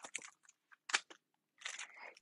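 A few brief, faint crinkles and clicks of a cellophane-wrapped paper pack being picked up and handled.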